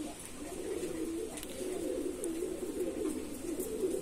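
Fantail pigeons cooing, many low coos overlapping with one another.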